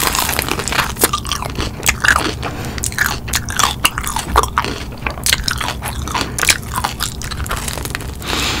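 Close-up eating sounds of someone biting into and chewing crispy fried chicken wings topped with cheese sauce: a dense, irregular run of crunches from the fried breading.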